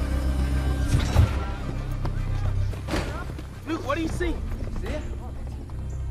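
Film soundtrack: a low, steady musical score with several young men's voices calling out briefly around the middle as they run to the lift box.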